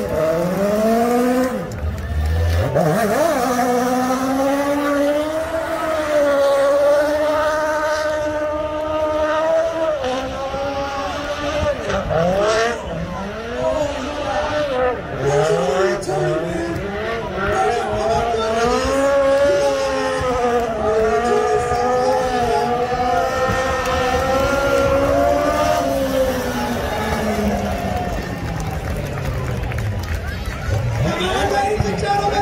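A small car's engine held at high revs through burnouts, its pitch wavering up and down for long stretches, with the rear tyres spinning.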